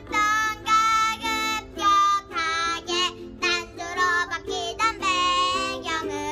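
A young girl singing a Korean pop song in short phrases, accompanied by two ukuleles.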